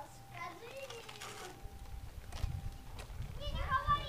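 A toddler's faint babbling in short, wordless bursts, once early and again near the end, over a low rumble on the microphone in the second half.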